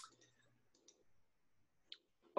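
Near silence broken by sharp computer mouse clicks, the clicks of a presenter advancing slides: one at the start and one near the end, with a fainter one in between.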